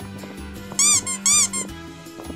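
Two short, high squeaks about half a second apart, each rising and falling in pitch, like a cartoon sound effect. They play over quiet background music with a steady low tone.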